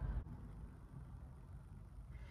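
Faint, steady low rumble of a car heard from inside its cabin, with a light hiss above it.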